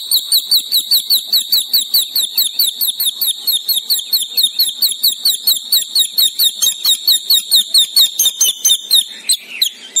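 A bird calling a fast, even run of high chirps, about six a second, each a short slide in pitch; the run fades out shortly before the end.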